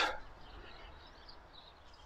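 Near quiet with faint distant birds chirping in the first half.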